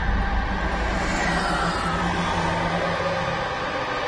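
Horror film score: a sustained drone with a deep rumble that eases off two to three seconds in, under several steady held tones.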